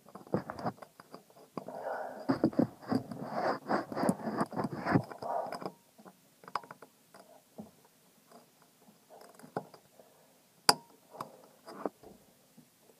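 Hands fumbling with a throttle cable end at an engine's throttle linkage, with close rubbing against the phone's microphone: dense scraping and clicking for about the first half, then scattered small clicks and one sharp click a little before the end.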